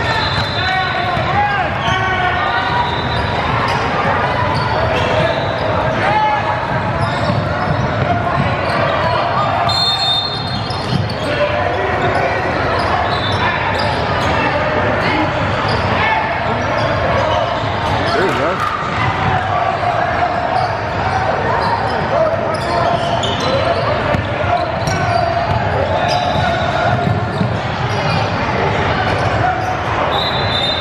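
Basketballs bouncing on a hardwood gym floor against the continuous chatter of many voices in a large, echoing gymnasium, with a few brief high-pitched tones cutting through near the start, about ten seconds in, and near the end.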